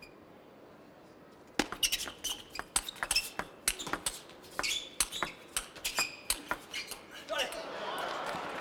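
A fast table tennis rally: a quick run of sharp clicks as the ball is struck back and forth by rubber bats and bounces on the table, starting about a second and a half in. The rally stops near the end, and crowd noise swells as the point is won.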